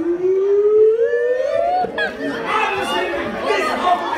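A single voice, amplified through the hall, holds one long note sliding up about an octave over nearly two seconds. Then the audience chatters and calls out over it.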